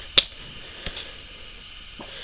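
Comic book pages being flipped by hand: a sharp paper snap about a quarter second in, then a softer flick near one second.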